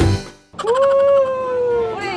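Strummed guitar music cuts off, then about half a second in comes one long drawn-out cat meow used as a sound effect: it rises quickly, then holds and slowly falls in pitch.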